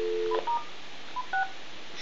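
Telephone dial tone, two steady tones held together, cutting off after a moment as dialing begins, followed by about four short touch-tone (DTMF) key beeps as a number is keyed in.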